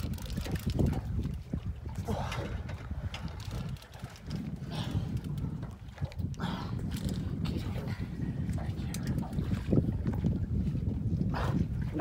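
Wind rumbling steadily on the microphone, with a man's short strained grunts and breaths every few seconds as he pumps and winds against a heavy fish on rod and reel.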